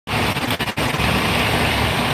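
Steady rumble and hiss of a semi truck running, heard from inside the cab, dipping briefly a few times in the first second.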